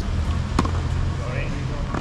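A single sharp pop of a tennis ball struck on an outdoor court, about half a second in, over a steady low rumble.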